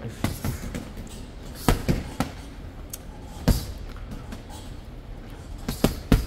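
Boxing gloves hitting a TKO heavy punching bag: irregular thuds, some coming in quick pairs, the loudest about three and a half seconds in.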